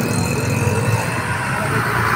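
Busy road traffic with a passenger bus passing close by, its engine running, amid motorcycles and auto-rickshaws: a steady rumble and hiss that grows brighter near the end as the bus draws alongside.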